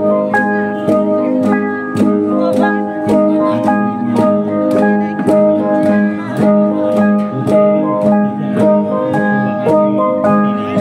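Jrai cồng chiêng gong ensemble: many copper-alloy gongs, flat and bossed, struck in turn so that their ringing pitches interlock into a repeating melody over a steady pulse of strokes.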